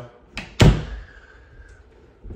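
Interior door knocking once, sharply, with a light tap just before it and a short ringing tail after.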